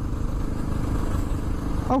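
Honda XR650R's single-cylinder four-stroke engine running steadily while the bike cruises along the road, with wind and road noise, heard from a helmet-mounted camera.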